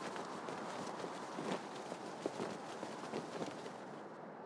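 Faint, irregular hoofbeats of horses, low under a steady hiss, from the anime's soundtrack.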